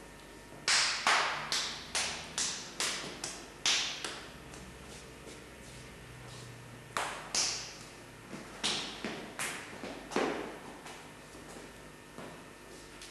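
A run of sharp knocks or taps, each with a short ring of room echo, coming about two or three a second for some three seconds. A few more irregular ones follow later.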